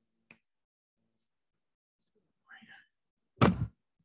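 A slab of clay thrown down onto the work table with one heavy thud about three and a half seconds in. The throw stretches the slab thinner. A faint tick comes shortly after the start.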